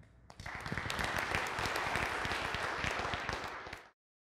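Audience applause: many people clapping at the close of a talk, starting about half a second in and cutting off suddenly just before the end.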